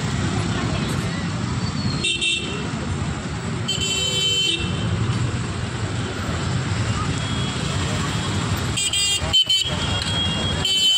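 Street traffic: the engines of auto-rickshaws, scooters and cars running in a steady rumble, with vehicle horns honking three times, about two seconds in, around four seconds in, and near the end.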